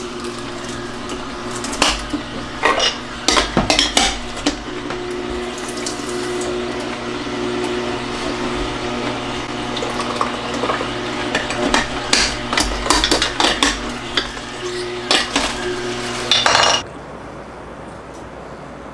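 Kuvings vertical slow juicer running with a steady motor hum, with irregular cracking and knocking as produce is crushed by the auger and pushed down the feed chute. The sound cuts off abruptly near the end.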